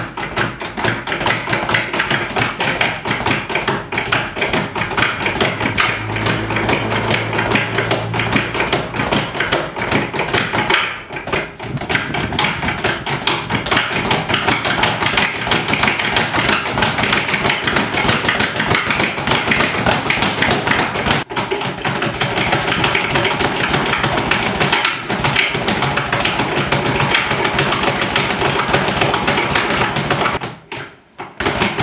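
Speed bag being punched in fast, unbroken rhythmic runs, each hit followed by the bag rebounding off the platform in a rapid rattle, with two brief pauses.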